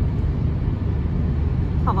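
Steady low rumble of a car driving, heard from inside the cabin. A woman's voice starts near the end.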